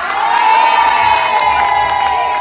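Audience cheering, with several high, drawn-out shouts held over one another.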